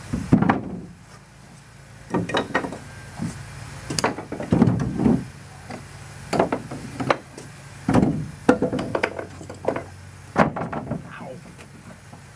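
Wooden boards and sticks knocking and clattering as they are handled and set down, in a dozen or so irregular knocks and short clatters.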